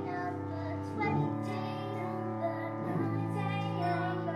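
A musical-theatre song: young girls' voices singing long held notes with vibrato over instrumental accompaniment.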